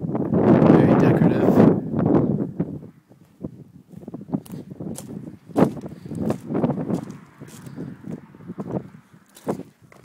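Loud rustling noise on the microphone for the first two to three seconds, then scattered footsteps and light knocks as someone walks with a handheld camera.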